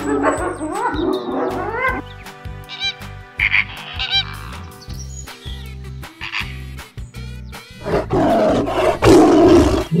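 Cartoon animal sound effects over background music with a steady beat: rising snarling cries in the first two seconds, then a loud big-cat roar from about eight seconds in, which is the loudest part.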